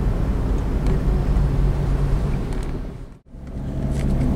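Road and engine noise from inside a moving car, a steady low rumble. About three seconds in it fades out to a moment of silence and then returns.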